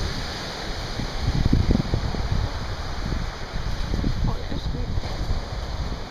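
Wind buffeting the microphone in irregular low gusts, loudest a little under two seconds in, over the steady wash of small surf breaking on a sandy beach.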